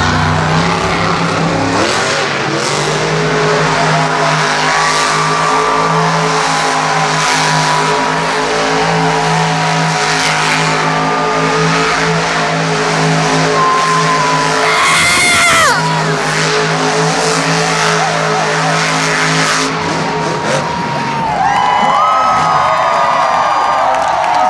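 Monster truck engines running and revving as the trucks race the dirt track, a steady drone with rises and falls in pitch. About two-thirds of the way through there is a short high screech, and the drone drops away near the end.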